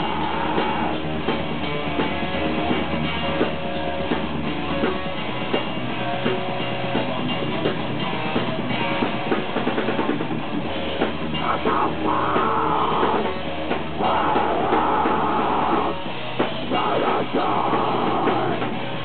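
Heavy metal band playing live: distorted electric guitar and a drum kit with dense, fast drumming, the riff changing a few times.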